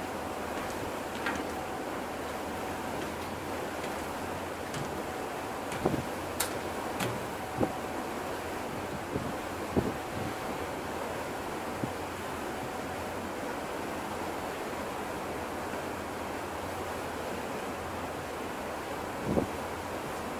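Steady rush of wind and water heard from the deck of the coastal ship MS Finnmarken under way, with a few short knocks scattered through it.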